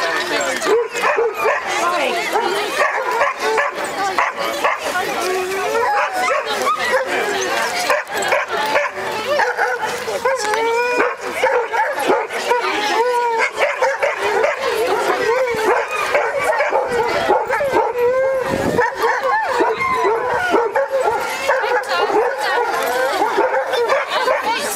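Many vizslas on leads barking and whining together, with people talking among them.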